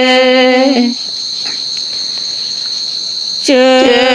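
A steady, high-pitched insect trill, typical of a cricket, runs unbroken through a pause in a slow Karen chanted poem. A long held sung note ends just under a second in, and the chanting comes back in near the end.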